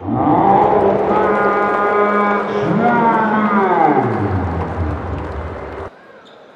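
Loud horn-like droning made of several held tones. One pitch slides up about three seconds in, then falls away low, and the whole sound cuts off suddenly just before the end.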